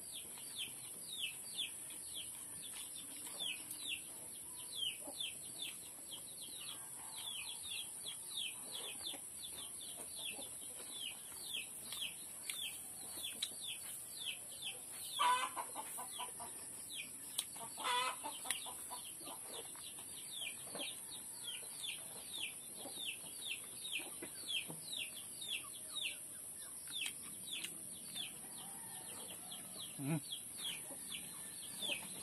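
Chickens calling: a steady run of short, high, falling peeps, several a second, with two louder calls about halfway through. A steady high hiss runs underneath.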